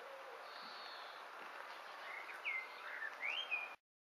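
Faint outdoor background hiss with a small bird chirping several times in the last second and a half, short sweeping high notes. The sound cuts off suddenly just before the end.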